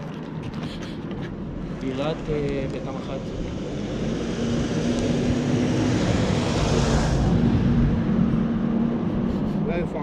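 A pickup truck drives past on the road close by, its engine and tyre noise building to a peak about seven seconds in and then easing off.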